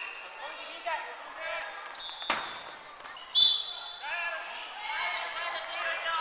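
A giant Kin-Ball struck once about two seconds in, a single sharp hit with a ringing tail in the hall, amid players' shouted calls. Short high squeaks, most likely sneakers on the wooden gym floor, come just before and about a second after the hit, the later one the loudest sound.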